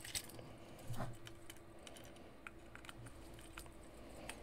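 Quiet, scattered small clicks and ticks of hands working tiny screws into 3D-printed plastic robot parts, over a faint steady hum.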